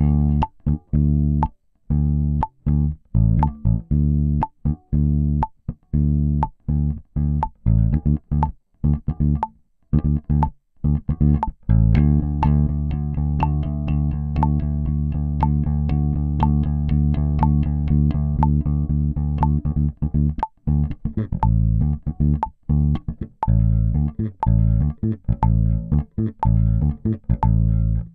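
Electric bass guitar improvising rhythms on just two notes, D and the A a fifth away, over a metronome clicking on beats two and four, about once a second. The rhythms keep changing: short notes with gaps, then a steadier run of notes in the middle, then gaps again.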